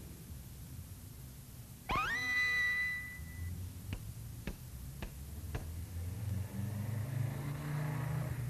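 Cartoon sound effects: a synthesized tone sweeps quickly up to a high whistling note held for about a second, then four sharp clicks half a second apart, then a low throbbing hum that builds near the end.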